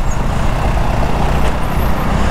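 Steady rush of road and wind noise from a moving motorcycle in city traffic, with a low engine rumble underneath.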